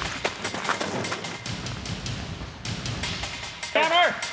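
Background music with a quick, steady percussive beat. A voice comes in briefly near the end.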